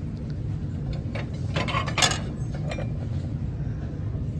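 Ceramic plates clinking against each other as one is handled and lifted off a stack: a few light knocks, the loudest about two seconds in, over a steady low background hum.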